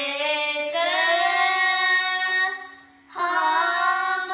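Two children singing a Sikh shabad kirtan in raag Bhairo, in long held and gliding notes, with a brief break for breath about two and a half seconds in. A steady low drone tone sounds underneath and carries on through the break.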